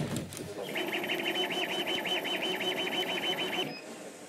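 Laser cutter's head moving back and forth over the workpiece, its motors making a fast run of evenly repeated chirps. The chirps start about a second in and stop just before the end.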